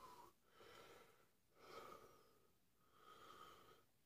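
A man's faint, heavy breathing through the mouth, four breaths about a second apart, as he copes with the burn of a Carolina Reaper pepper he has just eaten.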